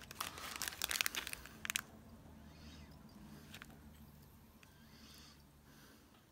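Crinkling and clicking of fly-tying materials being handled at the vise, busiest over the first two seconds. After that, a faint low hum with a few single clicks.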